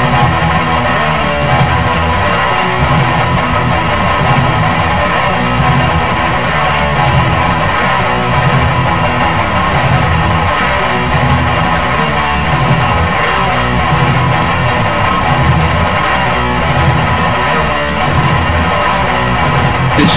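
Heavy metal music: an instrumental passage led by electric guitar, loud and continuous.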